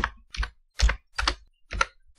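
Typing on a computer keyboard: a handful of separate keystrokes at an uneven pace, about two a second.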